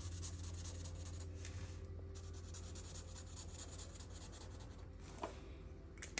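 Faint strokes of a felt-tip marker colouring in on a paper page, over a steady low hum.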